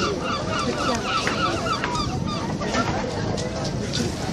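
Herring gull calling: a quick run of about eight repeated notes in the first second, then scattered shorter calls, over a steady background of outdoor noise.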